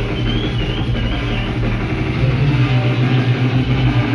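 Loud DJ-set club music played through a sound system, with a heavy bass line and a high wavering synth tone that fades out about a second and a half in.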